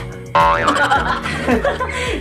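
Cartoon-style 'boing' sound effect that starts suddenly about a third of a second in, its pitch rising and then falling, over background music with a steady beat.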